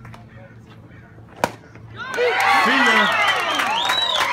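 A single sharp crack as a pitched baseball reaches home plate, then, from about halfway through, spectators yelling and cheering loudly over one another.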